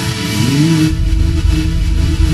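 Instrumental music: a tone glides upward, then a deep, heavy bass comes in about a second in while the higher sounds drop back.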